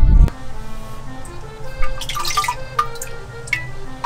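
A ladle dipping into homemade soy sauce in an earthenware jar, with a few small drips and splashes over soft background music. A louder sound at the very start cuts off abruptly.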